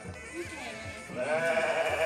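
A Garut sheep bleating once: one quavering call about a second long, starting about a second in, with music playing underneath.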